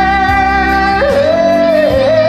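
A man singing a long held high note in a sertanejo ballad, which steps down to a lower held note about a second in, over a karaoke backing track.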